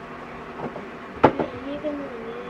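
A single sharp knock or clap about a second in, then a person's voice holding a low, drawn-out hum that wavers slightly in pitch.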